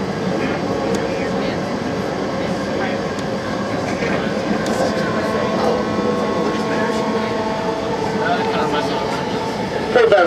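A BART train car running at speed, heard from inside the car: a steady rumble of wheels on rail with a few steady whining tones over it. The tones shift a little about eight seconds in.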